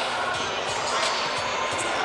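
Wrestling-hall din: a hum of distant voices and shouts with scattered dull thuds of bodies and feet hitting the mats, several a second.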